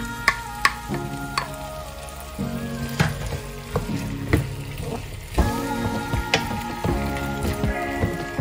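A wooden spatula stirring chicken and vegetables frying in a nonstick pan, with a sizzle and irregular sharp knocks and scrapes of the spatula against the pan.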